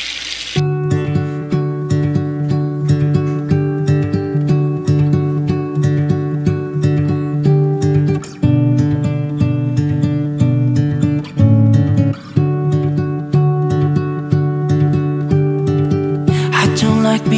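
Background music: strummed acoustic guitar playing a steady, gentle rhythm, starting about half a second in.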